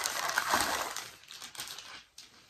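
Clear plastic packaging bag crinkling and rustling as a garment is pulled out of it. It is loudest in the first second, then fades to a few faint rustles.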